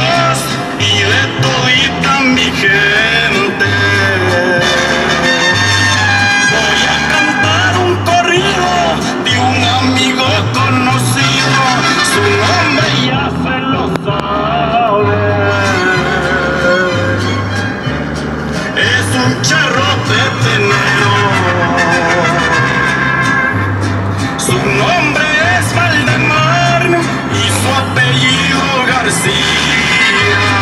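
Mexican corrido music with mariachi-style backing: a bass alternating between two notes on a steady beat under a wavering melody line.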